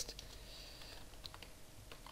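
Faint keystrokes on a computer keyboard, a few quick taps mostly in the second half as a line of code is typed.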